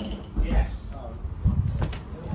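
Footsteps and handling knocks as someone steps down off a bus onto the pavement, over a low rumble, with a sharp click at the start and another near the end.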